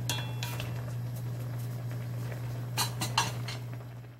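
Wooden spatula stirring king oyster mushrooms braising in sauce in a pan, knocking against the pan, with a quick run of knocks near the end. A steady low hum runs underneath.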